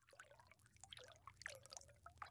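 Near silence, with faint scattered drip-like ticks over a low hum.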